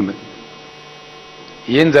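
Steady electrical mains hum on the microphone sound, a buzz of many evenly spaced steady tones, heard plainly in a pause in a man's speech. His voice stops just at the start and comes back near the end.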